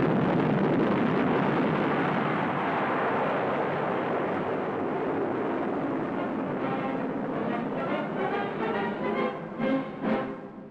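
Test missile's rocket motor at launch: a dense, steady rushing noise that slowly fades. Orchestral music with brass comes in about seven seconds in and grows toward the end.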